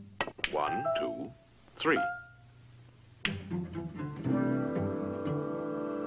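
Donald Duck's quacking cartoon voice counting 'one, two, three' in short wobbling bursts, among sharp clicks. Orchestral music comes back in a little after three seconds and carries on.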